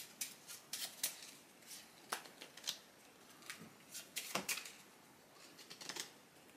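A deck of playing cards being shuffled and handled by hand: scattered, faint clicks and snaps of the cards, a few every second.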